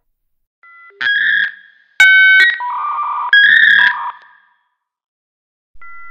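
Electronic telephone tones: a string of short blocks of steady paired touch-tone (DTMF) and line tones from about a second in, stopping about four seconds in and starting again near the end.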